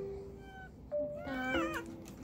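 A domestic cat meows once, a drawn-out meow that bends up and down in pitch, starting a little over a second in. Light background music with held notes plays underneath.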